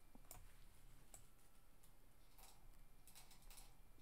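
Near silence: quiet room tone with a few faint, scattered clicks from computer controls.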